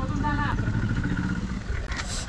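An engine running steadily with a low hum.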